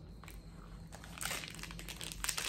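Biting into and chewing an 88 Acres apple ginger crisp seed and oat bar, with its plastic wrapper crinkling in the hand. It is mostly faint, with one brief louder crackle a little over a second in.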